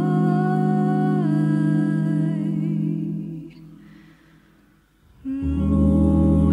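A cappella vocal ensemble humming sustained chords, the voices gliding between notes, then fading to near silence about four seconds in before coming back in with a new chord with a deeper bass note near the end. Played back from reel-to-reel tape on a Nagra T-Audio recorder.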